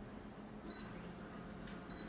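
Photocopier touch panel giving two short, high beeps as its screen buttons are pressed, the first under a second in and the second near the end, over a faint steady hum.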